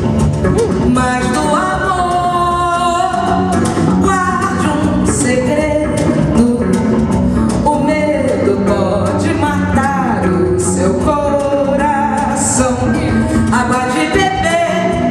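Women singing a bossa nova song live on microphones over guitar accompaniment, with sung lines and some long held notes.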